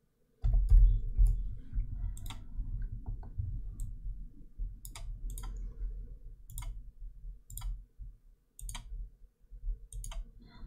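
Scattered sharp clicks of a computer mouse and keyboard, about a dozen at irregular intervals, over a low steady rumble.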